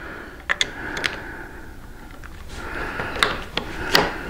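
A handful of scattered small clicks and knocks from a T-handle driver working the screw on a motorcycle handlebar switch housing. The screw is being backed off a little because it was tightened too far and the throttle grip was sticking.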